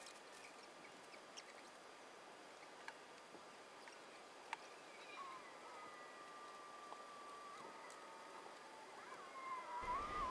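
Near silence: faint room tone with a few small clicks and, in the second half, a faint thin steady tone.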